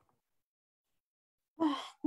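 Silence, then near the end a short breathy sound: a person drawing an audible breath, or sighing, just before she starts to speak.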